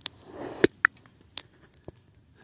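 Handling noise from a phone being set down and repositioned: a few sharp clicks and knocks with a short rustle, the loudest two knocks just past half a second in.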